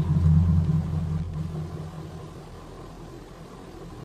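A deep low rumble, loud for the first second and a half, then fading away.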